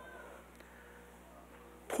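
A quiet pause in a man's speech: faint room tone with a low steady hum and a brief, faint high glide a fraction of a second in, then his voice starting again right at the end.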